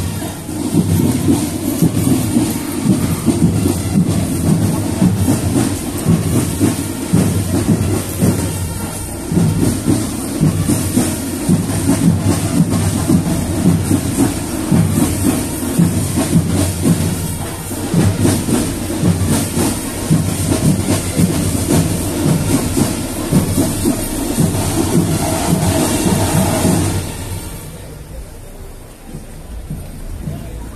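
Marching band playing loudly, dominated by dense, rapid drumming, which stops about a second before the end.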